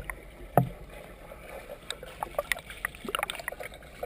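Pool water heard underwater through a submerged camera: a muffled background with a sharp knock about half a second in, then scattered small clicks and ticks as a swimmer swims freestyle past.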